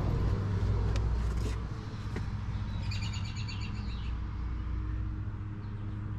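A bird chirping in a quick, high trill lasting about a second, a few seconds in, over a steady low background rumble with a few faint clicks.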